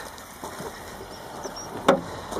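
Low handling noise, then a single sharp knock near the end as the car's bonnet is handled and raised.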